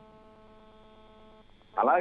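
Faint steady electrical hum with a row of even overtones on a phone-in telephone line. It stops about one and a half seconds in, just before the caller speaks.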